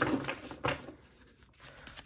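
Tarot cards being handled and shuffled in the hands: a few soft taps and riffles in the first second, then quieter.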